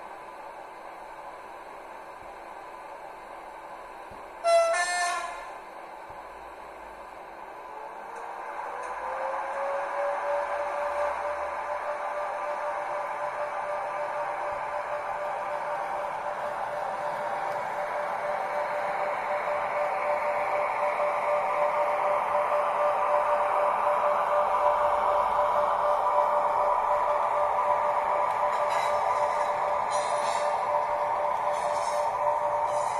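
Märklin 3770 ICE (BR 401) model's ESU Loksound 5 sound decoder, playing through its small loudspeaker: a short horn toot about five seconds in. Then the ICE running sound starts, a whine that rises in pitch and holds steady, growing louder as the model approaches.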